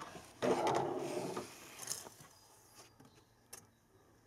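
Cabin air filter being slid out of its housing behind the glove box: a rubbing, sliding noise starting about half a second in and lasting about a second before fading, followed by two light clicks.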